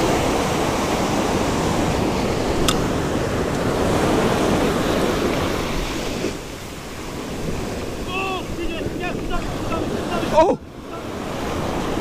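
Ocean surf washing up a sandy beach, with wind buffeting the microphone; the wash eases a little about halfway through.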